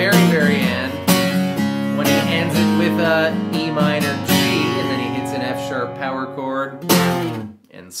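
Acoustic guitar strummed through a repeating B, G, D, A chord progression, with a man's voice singing along over it. A last hard strum comes about seven seconds in and then rings away to quiet.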